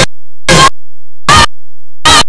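Short bursts of harsh digital noise with a ringing, buzzy edge, each about a fifth of a second long, with nothing heard between them: the sound of corrupted audio in a damaged digital video transfer. The picture breaks up into blocks at the same moment.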